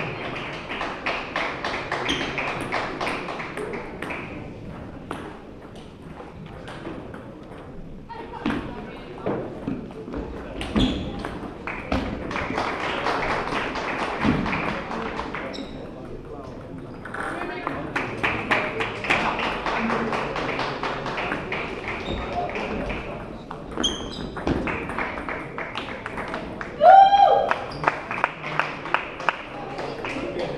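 Table tennis rallies: quick runs of sharp clicks from the celluloid ball striking bats and the table, over steady voices in a large hall. Near the end comes a short, loud, high-pitched shout that rises in pitch.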